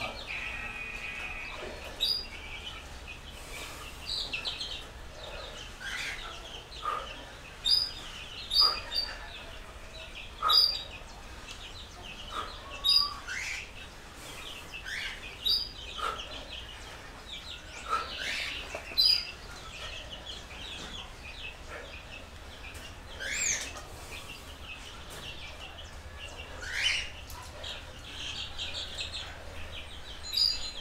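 Birds chirping: short high chirps and some rising calls, repeated irregularly every second or two.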